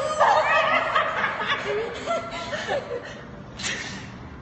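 Several people laughing and chuckling together, loudest in the first second and then dying down.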